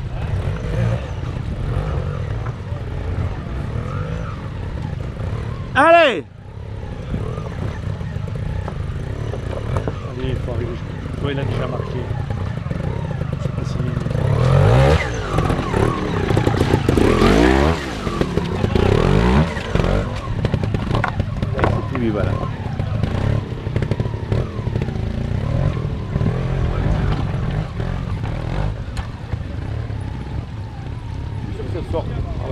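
Trials motorcycle engine revving in bursts as the bike is ridden up over boulders in a stream bed, the revs rising and falling, busiest between about 14 and 20 seconds in. A short, loud burst comes about six seconds in.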